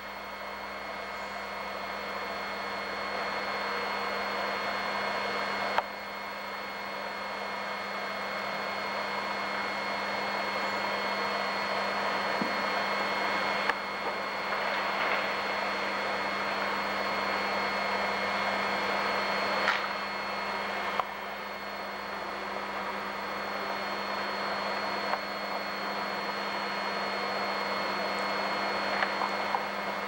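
Steady rushing noise with a steady hum, slowly growing louder, broken by a few small clicks.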